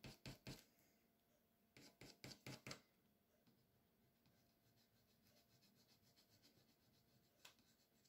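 Faint scratching of a coloured pencil shading on foam board, in quick even back-and-forth strokes: a short run at the start, another around two seconds in, then only very faint rubbing.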